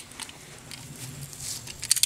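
Faint handling noise from a 1911 pistol being worked in the hands, with a few sharp clicks near the end.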